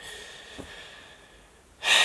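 A man breathing: a soft, fading exhale, then near the end a sudden loud, sharp breath.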